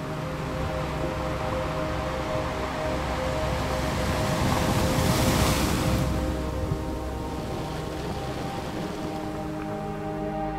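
Slow ambient music with held tones, over which the rush of an ocean wave builds, peaks about halfway through and fades away.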